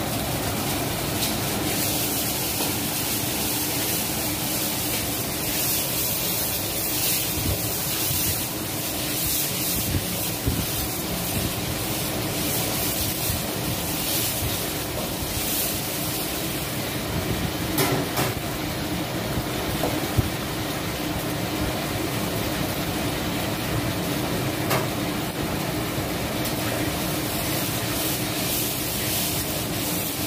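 Gas wok burners running at full flame with a steady roar, mixed with food sizzling in the woks. A few sharp clicks of a metal spatula striking the wok stand out over it.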